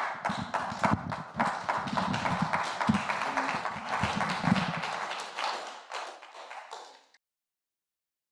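A small group applauding, a dense patter of claps that fades out and ends in silence about seven seconds in.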